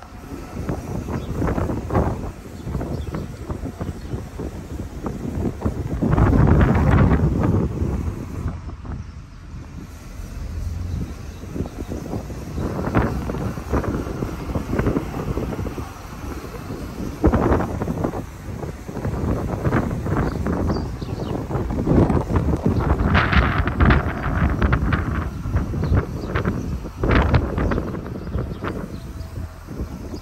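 Wind buffeting the microphone in uneven gusts, a rumbling rush that swells and drops, strongest about a quarter of the way in.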